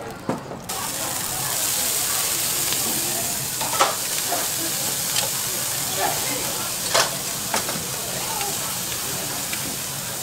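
Noodles and vegetables sizzling on a hot steel flat-top griddle, the sizzle coming in abruptly under a second in and holding steady. A few sharp clicks stand out over it.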